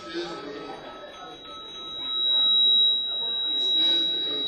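A steady high-pitched tone that swells in about halfway through and becomes the loudest sound, over the murmur of voices in the room.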